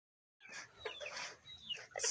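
A domestic chicken clucking faintly, a few short calls starting about half a second in.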